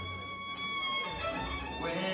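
Live bluegrass fiddle sliding up into a long held note, then moving on to shorter notes with another slide near the end, over low bass notes.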